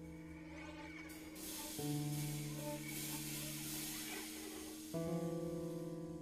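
Free-improvised ensemble music: sustained held tones that move to new pitches twice, under a shimmering wash from a cymbal being scraped with a drumstick.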